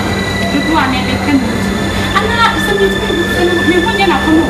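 A man and a woman talking over a steady low hum and a thin, high, constant whine.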